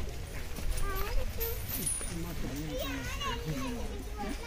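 Several people talking at once, with a child's higher voice among them, over a steady low rumble.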